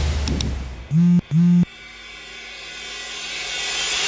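Outro sound effects: two short low buzzing tones about a second in, back to back, followed by a hiss that swells steadily louder.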